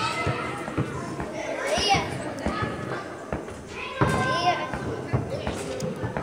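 Children's voices and calls in a large gym hall, with scattered knocks of a basketball bouncing on the hard floor.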